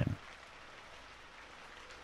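Steady, gentle rain: a background rain recording with an even patter and no single drops standing out.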